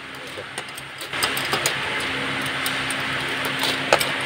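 A motor starts about a second in and then runs steadily with a low hum. Over it, light metallic clinks of steel wire as chain-link mesh is worked by hand with a metal tool, with one sharper clink near the end.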